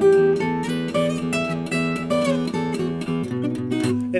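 Acoustic guitar played fingerstyle: a bluesy run of single plucked notes over a held, ringing lower note, with deeper bass notes coming in near the end.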